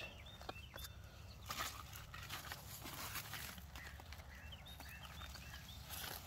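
A bird's short high chirps, a few just after the start and a run of them near the end, over a steady low rumble of wind on the microphone and light rustling of squash leaves.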